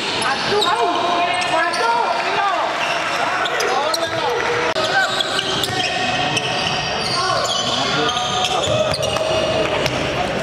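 Game sounds of indoor basketball on a hardwood court: the ball bouncing as it is dribbled, short high squeaks of sneakers, and players' voices calling out during play.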